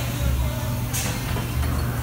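Automatic textile screen-printing press running: a steady machine hum with a low pulse about every second and a half, and a short hiss of compressed air about a second in.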